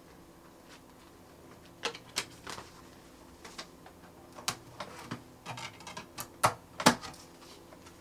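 Plastic CD jewel cases being handled: a string of irregular sharp clicks and clacks as cases are picked up, shuffled and snapped open, the loudest two near the end.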